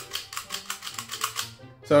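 Eye mechanism of a Real FX baby T-Rex puppet clicking rapidly as the eyes blink, plastic hitting plastic, a camera-shutter-like clatter that stops about a second and a half in. The noise comes from the cheaply made eye mechanism.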